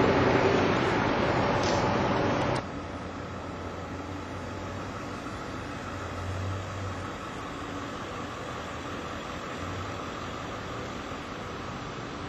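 Outdoor background noise. A loud rushing noise fills the first two and a half seconds and cuts off abruptly, leaving a quieter steady low hum.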